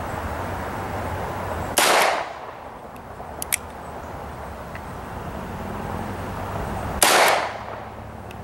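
Two shots from a stainless Ruger GP100 revolver, about five seconds apart, each with a short ring-out after it. Between them, faint clicks as the hammer is cocked back for the next single-action shot.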